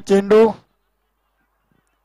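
A man's commentating voice, drawn out, ending about half a second in, then near silence.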